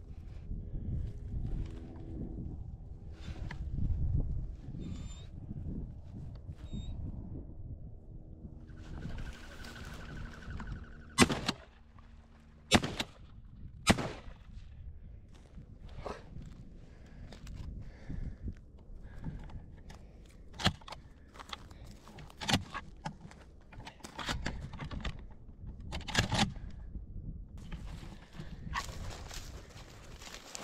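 Shotgun firing at a duck: sharp cracks about eleven, thirteen and fourteen seconds in, among footsteps and rustling in dry grass. A low wind rumble on the microphone fills the first several seconds.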